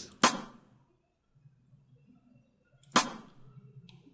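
Two single drum hits from a software drum kit, each sounded as a MIDI note is clicked in the Cubase piano roll; the second comes about two and a half seconds after the first.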